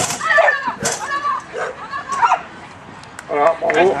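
A handler calling short, shouted commands to a dog during an agility run, with a sharp knock a little under a second in.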